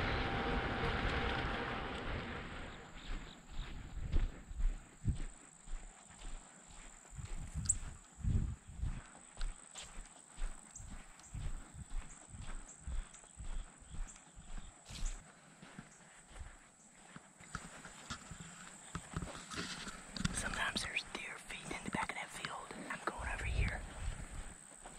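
Footsteps walking on a sandy dirt track, about one and a half to two steps a second, stopping a little after halfway through. A faint steady high whine runs underneath, and a rustling hiss comes near the end.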